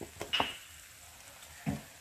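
Kitchen utensils knocking against an aluminium wok: a short clink about half a second in and a duller knock near the end, with only faint background between.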